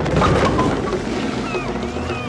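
Cartoon sound effects of bowling balls rolling across a yard: a rumbling noise that starts sharply, with short chirps over it and a thin rising whistle near the end.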